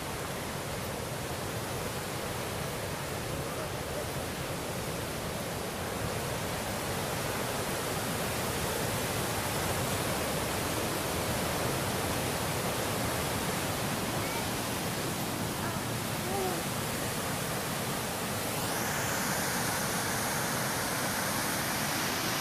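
Yellowstone River whitewater rushing over rapids and falls: a steady, even wash of water noise that holds at one level throughout.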